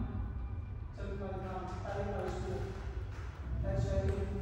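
Speech only: a man's voice calling out cues in two short phrases, about a second in and again near the end, over a low steady room rumble.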